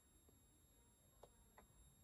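Near silence: room tone with faint steady high whines and two faint ticks a little past halfway.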